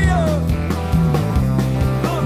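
Rock band playing live: electric guitars, electric bass and a drum kit, the drums keeping a steady beat.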